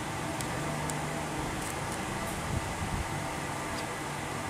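A steady low hum and hiss of background noise, with a few faint clicks and a soft low bump as the phone and its metal battery cover are handled.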